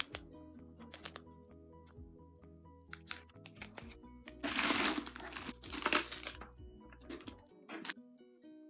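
Crinkling of a fun-size Skittles packet's plastic wrapper as it is handled, loudest about halfway through with a shorter rustle a second later, over soft background music.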